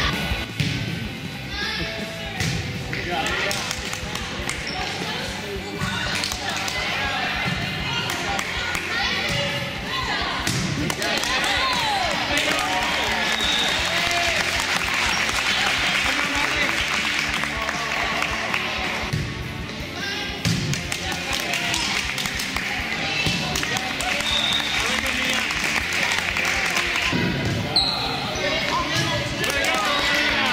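A volleyball bouncing and being struck on a gym floor in a large, echoing hall, with a steady hubbub of children's and adults' voices throughout.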